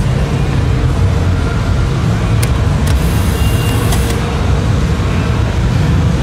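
Steady low rumble of vehicle engines and road traffic on a city street, with two brief clicks about two and a half and three seconds in.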